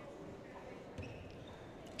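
A basketball bouncing once on a hardwood court about a second in, over a faint murmur of gym crowd voices.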